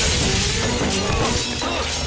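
A large plate-glass window shattering as a body crashes through it, the glass crackling and falling apart and slowly dying away, over action-film background music.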